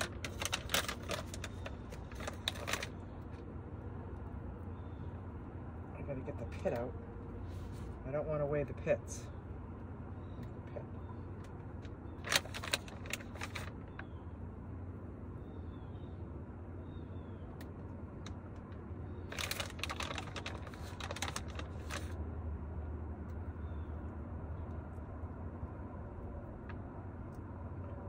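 A plastic bag crinkling in short bursts as dates are pulled out of it by hand, three times: near the start, about twelve seconds in, and about twenty seconds in. A steady low hum runs underneath.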